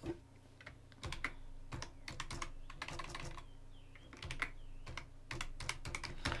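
Computer keyboard typing: irregular keystrokes, starting about a second in, as a word is typed.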